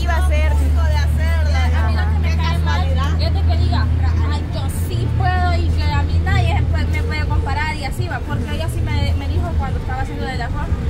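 Women talking, with a vehicle engine idling close by as a steady low hum, strongest in the first half.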